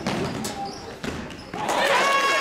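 Basketball dribbled on a hardwood gym floor, a few sharp bounces, with a high, held shout starting near the end.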